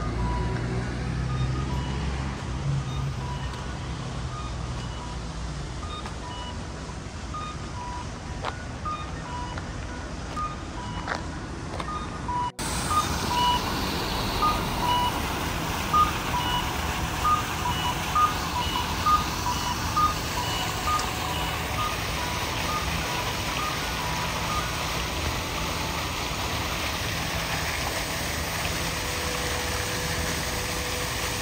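A simple melody of short, evenly spaced high notes, like a music box or electronic chime, over a steady outdoor wash of traffic noise.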